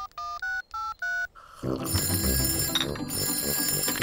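Cartoon mobile phone being dialled: about six quick keypad beeps, each two tones at once. Then, from about a second and a half in, an old-fashioned telephone bell rings steadily.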